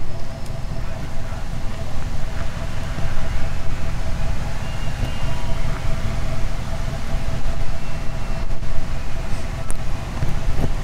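Wind buffeting the camera microphone: a loud, uneven low rumble, with a faint steady hum underneath.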